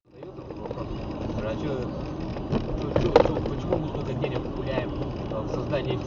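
Car cabin sound while driving: steady road and engine noise with indistinct voices, and one sharp knock about three seconds in.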